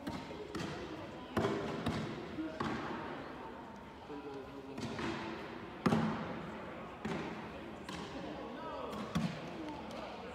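Scattered thuds echoing through a large hall, about seven in all, the loudest about six seconds in: cornhole bags landing on wooden boards. A background murmur of voices runs under them.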